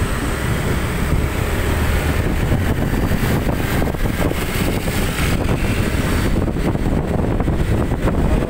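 Wind buffeting the microphone of a moving motorcycle, over a steady low rumble of engine and road noise.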